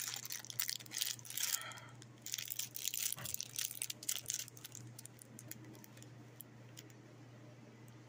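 Clear plastic wrapper of wax melts crinkling and crackling as fingers handle it, a run of small crackles that thins out after about five seconds, over a steady low hum.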